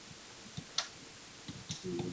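A few light clicks, one sharp one a little under a second in and fainter ones later, ending with a short, low hummed voice sound.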